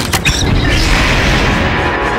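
Cartoon action sound effects over a heavy low rumble: two sharp hits just after the start, then a dense, mechanical-sounding rush.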